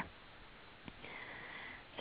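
Near silence in a pause in a woman's speech, with a faint click about a second in and then a faint, short breath just before she speaks again.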